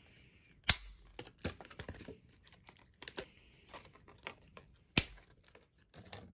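Thin acrylic sheet clicking and snapping as it is bent to pop cut-out blanks free, with smaller ticks and light plastic rustling between. Two sharp snaps stand out, one about a second in and one near the end.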